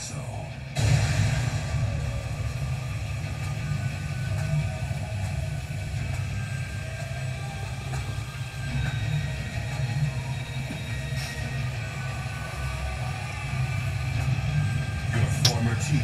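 Tense anime background score over a steady, deep rumble that comes in suddenly about a second in and holds.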